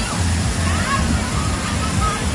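Water pouring and splashing steadily down a water-park play structure, with children's voices calling faintly over it.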